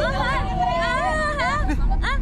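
A woman vocalising with her tongue stuck out: a long wavering cry in the middle, with short rising-and-falling cries around it, over the babble of other voices.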